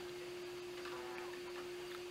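Steady electrical hum at one pitch, with faint room noise, in a pause between words.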